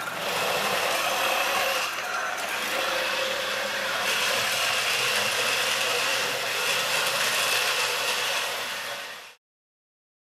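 An iRobot Create robot base carrying a netbook drives across a wood floor: a steady whir and rattle of its drive motors and wheels that cuts off suddenly near the end.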